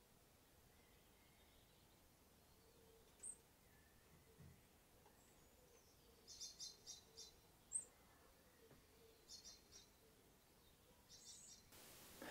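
Near silence broken by a bird's faint high chirps: a single sharp note about three seconds in, a short run of quick notes around six to seven seconds, another sharp note near eight seconds, and a few more quick notes later.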